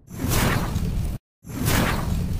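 Whoosh sound effects for an animated title intro, two in a row. Each swells up fast and is cut off abruptly: the first lasts about a second, and the second starts about a second and a half in after a brief silence.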